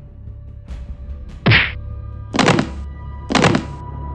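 Fight impact sound effects over a low droning music bed: a short sharp hit about one and a half seconds in, then two heavy thuds about a second apart.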